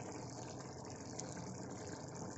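Spicy fish gravy simmering in a metal kadai, a faint steady bubbling hiss.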